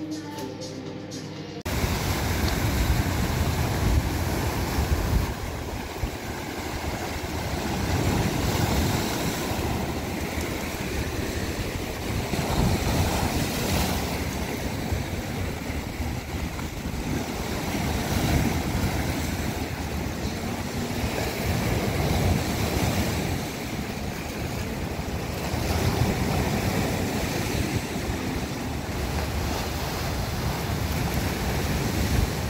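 Sea surf washing in over a rocky shore, swelling and easing every few seconds, with wind buffeting the microphone.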